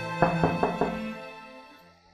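Four quick knocks in a row starting about a quarter of a second in, over held background music that fades away.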